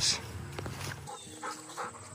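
A dog's faint, short whine, heard in the second half against a quiet outdoor background.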